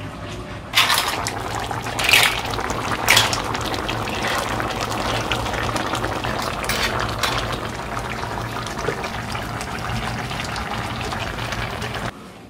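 Pots of soup and stew bubbling on the boil, with a few sharp splashes as shellfish are tipped from a bowl into the broth in the first few seconds.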